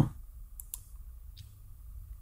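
Three short computer mouse clicks: two in quick succession, then one more about two-thirds of a second later.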